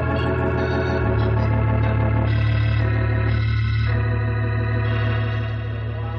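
Organ music bridge between scenes: sustained chords over a low held bass note, the harmony shifting every second or so and easing off near the end.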